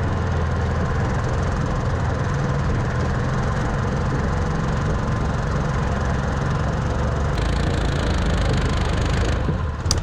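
Argo amphibious ATV's engine running steadily close to the microphone, a low even drone with rattle from the machine over rough ground. The sound shifts slightly about seven seconds in and dips briefly just before the end.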